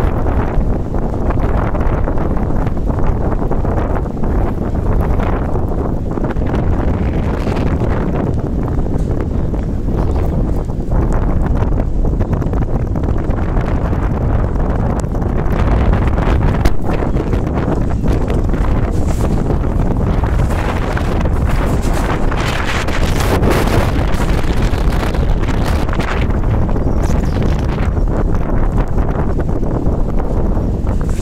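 Strong gusty wind of a dust storm buffeting the phone's microphone: a loud, steady rumble that swells with the gusts.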